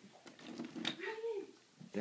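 Quiet voices in a small room, with one short pitched vocal sound, rising then falling, about a second in.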